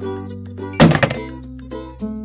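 Cheerful children's background music of plucked-string notes, with one loud thunk a little under a second in.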